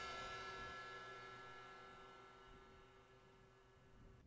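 A cymbal from the KitCore Deluxe software drum kit rings out after the drum track stops, fading to near silence within about two seconds.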